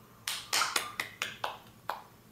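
A child clapping her hands, about seven quick, slightly uneven claps.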